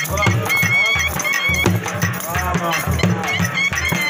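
Live dhol drumming in a steady, fast rhythm under a high, wavering wind-instrument melody: traditional folk dance music.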